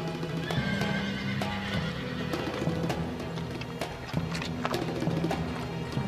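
Horses' hooves clip-clopping on packed dirt, with a horse neighing about half a second in. Background music with sustained low notes plays underneath.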